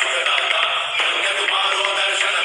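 Background music with a sung vocal line over a steady instrumental backing.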